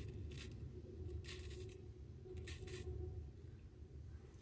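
Straight razor scraping through lathered stubble on the chin and neck: a few short, faint scratchy strokes roughly a second apart.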